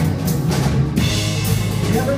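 Live blues band playing: electric guitar, electric bass and drum kit, with the drums to the fore. A cymbal-like wash of high sound comes in about a second in.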